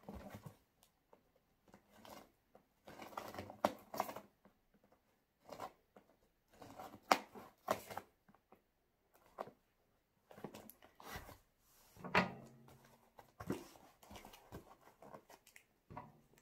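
Adhesive tape being picked at and peeled off a cardboard parcel, in irregular short bursts of rustling and tearing with sharp clicks and pauses between.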